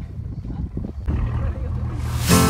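Low rumble of wind buffeting the microphone on a moving boat, with the boat's engine hum becoming steady about halfway through.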